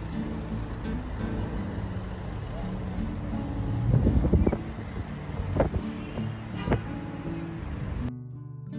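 Busy street ambience: car traffic running past close by, mixed with people's voices, louder for a moment about halfway through.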